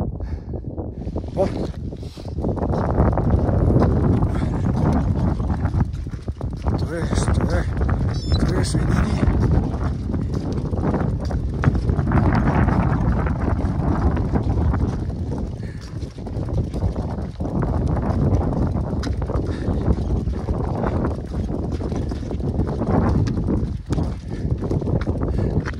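Strong wind buffeting the microphone: a loud, gusting rumble that swells and drops, with brief lulls a couple of seconds in and again around the middle.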